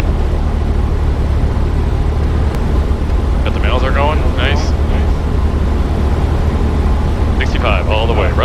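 Steady low drone of a Cessna 172SP's four-cylinder engine heard in the cockpit, throttled back on final approach. A short burst of voice comes about halfway through.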